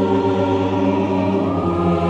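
Theme music of a choir holding long, sustained chords, with the chord changing about one and a half seconds in.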